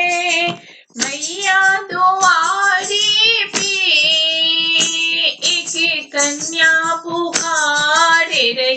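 A high-pitched voice sings a Hindi devotional bhajan in long held notes, with a brief break about a second in.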